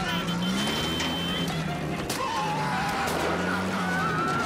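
Soundtrack of a war-movie street scene: voices rising and falling over vehicle noise and music, with a steady high tone in the first second or so and a few sharp clicks.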